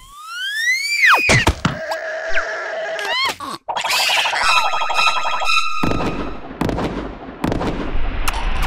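Cartoon sound effects: a whistle-like tone rises for about a second and then plunges, followed by a few sharp hits. Near the middle a buzzing, pulsing tone holds for over a second, then gives way to a stretch of noise.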